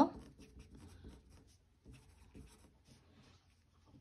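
Pencil writing on paper: a run of faint, short scratching strokes as a few words are written.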